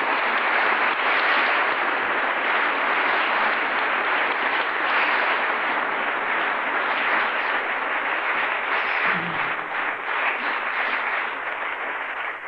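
Audience applause, dense and steady.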